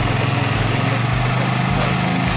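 Motorcycle engine idling steadily, loud and close.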